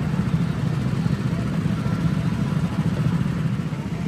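Go-kart engines running on the track, a steady low drone without changes in pitch.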